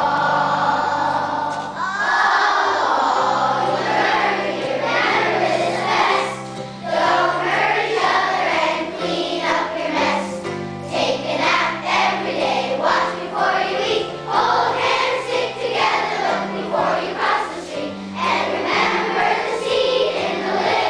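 A choir of third-grade children singing a song together in unison.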